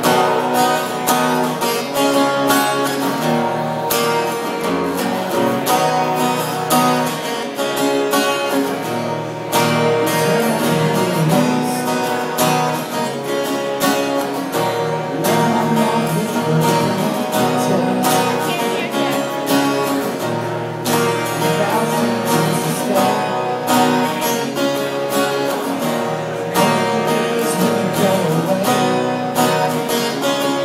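Two acoustic guitars playing together, strummed chords with a steady, regular rhythm.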